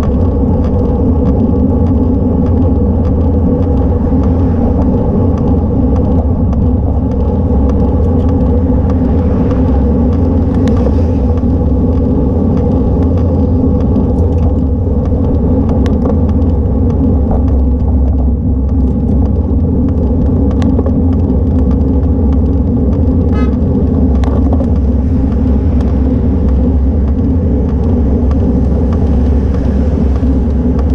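Steady, loud rumble of wind and road vibration picked up by a handlebar-mounted action camera on a road bike climbing at a steady pace.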